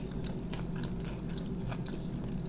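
Close-miked chewing of mouthfuls of a Burger King chocolate pie, heard as soft, scattered small mouth clicks over a steady low hum.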